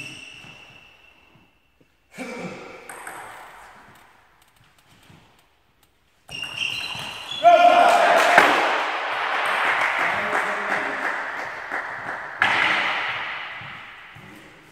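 Table tennis ball strikes and bounces, short sharp clicks with a ringing ping. About six seconds in, a loud stretch of voices and clapping starts, rising again shortly before the end.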